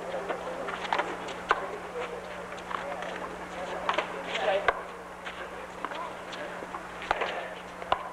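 A three-wall handball rally: sharp smacks of the small rubber ball struck by hand and hitting the concrete wall, one at a time and a second or more apart. Under them are indistinct voices and a steady low hum.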